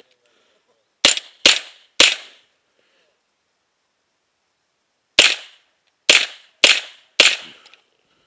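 Seven shots from a compact PDW-class rifle fired close to the microphone: three quick shots about a second in, a pause of about three seconds, then four more in a steady series near the end.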